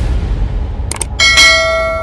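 A bell struck once a little over a second in, ringing on and slowly fading, just after a couple of sharp clicks, over a low rumble.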